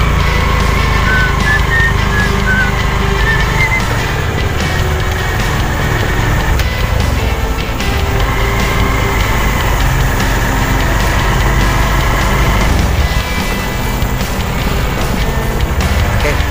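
Background music with a melody, laid over a steady low rumble from a vehicle riding along a bumpy dirt track.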